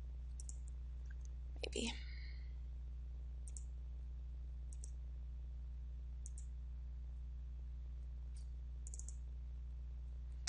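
Faint computer mouse clicks, about seven scattered single and double clicks, over a steady low hum.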